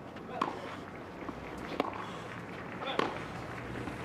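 Tennis ball being hit back and forth in a rally: sharp racquet hits about every second and a half, over a low, steady crowd background.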